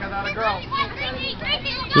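Several young female voices calling and shouting across a soccer field during play, overlapping one another at a distance.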